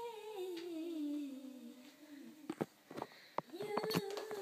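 A girl singing a long wordless note without accompaniment, the pitch sliding down over about two seconds. This is followed by a few short knocks and a new held note near the end.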